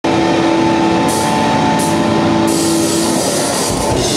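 Live rock band with electric guitars, bass, keyboard and electronic drums opening a song. A loud held chord rings while crashes come in about a second in and again twice after, ending with a low hit just before the end.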